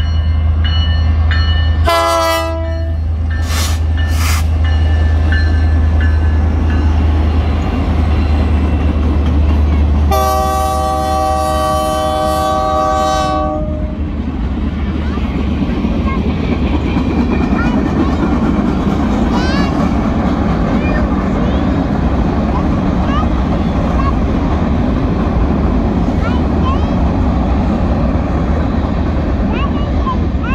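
BNSF freight train passing at a grade crossing: diesel locomotive engines rumble as it approaches, the air horn sounds briefly about two seconds in, then gives one long blast of about three seconds around ten seconds in. After that the freight cars roll past with a steady rumbling clatter.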